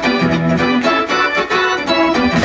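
Live rock band playing, with an organ-toned keyboard to the fore and lighter bass and drums.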